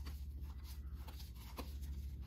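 Sports trading cards being thumbed through by hand: soft, brief slides and flicks of card against card, over a steady low hum.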